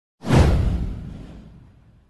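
Whoosh sound effect with a deep low boom underneath, coming in suddenly a fraction of a second in, sweeping down in pitch and fading away over about a second and a half.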